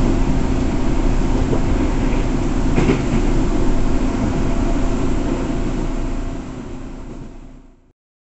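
Cabin noise of a moving electric commuter train: steady wheel-on-rail rumble under a constant low hum, with one brief knock about three seconds in. The sound fades out over the last two seconds.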